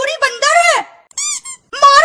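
A very high-pitched, sped-up cartoon character's voice. A short, higher squeak comes about a second in, followed by a brief gap before the voice resumes.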